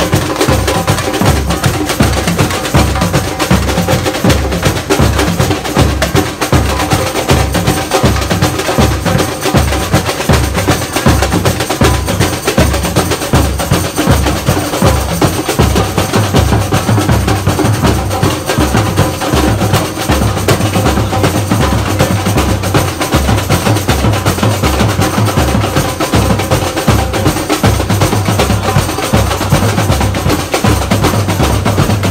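Samba batucada played live by a street percussion group: deep surdo bass drums beating a steady pulse about twice a second under dense, fast hits on repiniques and snare drums.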